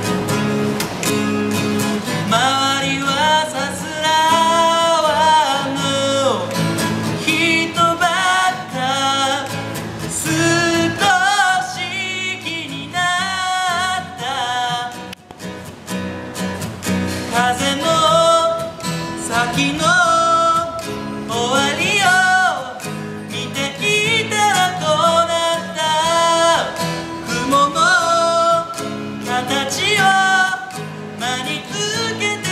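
A male singer performing with his own strummed acoustic guitar: the guitar plays throughout, and his voice comes in about two seconds in, singing in long phrases over it.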